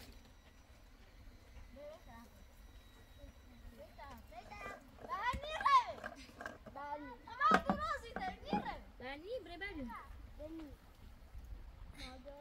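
High-pitched children's voices calling out and chattering in short, swooping phrases. The voices start about four seconds in, after a few seconds of quiet outdoor background.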